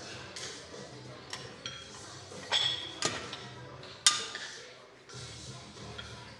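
Heavy iron plate dumbbells of about 55 kg each clinking and knocking as they are picked up and brought onto the knees: several metallic clinks that ring briefly, the loudest about four seconds in. Background music plays underneath.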